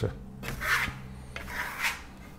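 Steel Venetian plaster trowel swept twice across a sample board, spreading a thin coat of matte decorative paint with a rasping scrape. A faint low hum runs underneath.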